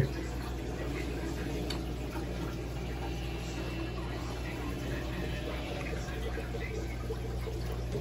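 Steady water bubbling and trickling from an aquarium's air bubbler and filtration, over a low, constant pump hum.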